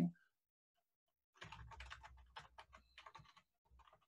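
Computer keyboard typing: a quick, faint run of key clicks starting about a second and a half in, after a moment of near silence.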